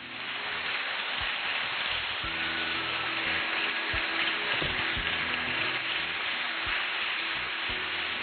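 Audience applauding, a steady dense clapping that stops as the speech resumes.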